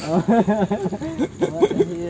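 Men's voices talking, with chuckling.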